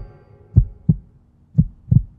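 Heartbeat sound effect in a logo sting: low paired thumps, lub-dub, about once a second like a slow pulse.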